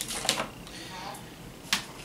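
Pringles chip cans being handled on a table: a sharp click at the start with a brief rustle after it, and another single sharp click near the end.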